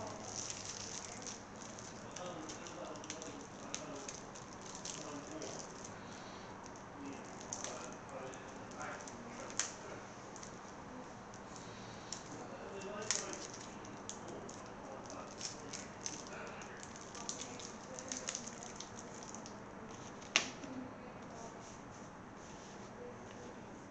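Soft crinkling and rustling of a trading-card structure deck's plastic shrink-wrap and cardboard box as it is opened, with scattered small clicks and a few sharper ticks.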